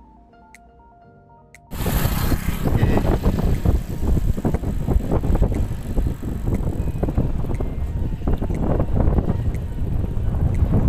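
Soft background music, then an abrupt cut about two seconds in to loud wind buffeting a moving camera's microphone while riding alongside cyclists on the road.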